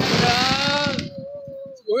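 Fireworks crackling and popping close by, with one long drawn-out syllable of a voice held over them. The fireworks noise drops away suddenly about a second in while the held voice carries on a little longer.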